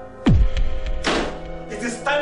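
A dramatic film sound effect over suspenseful music: a loud, deep hit about a quarter second in whose pitch drops sharply, then a second crashing hit about a second in that fades away.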